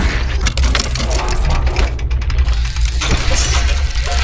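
Synthesized sound design for an animated logo intro: a heavy, steady bass drone under dense glitchy clicks and crackles.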